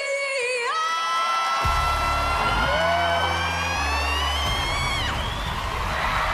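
A woman belting one long held high note into a microphone over live band backing, with deep bass chords underneath. The note climbs slightly, then breaks off downward about five seconds in.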